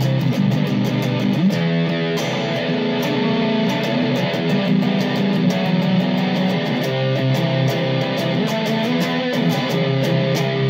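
Electric guitar played through a Zoom G2.1U multi-effects pedal on one of its preset patches, into a Vox Cambridge 15 amp: a continuous run of picked notes and chords.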